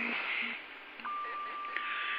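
CB radio receiver hiss in the gap between transmissions, then about a second in a steady high whistle comes on and holds. The whistle is a heterodyne from another carrier on the channel.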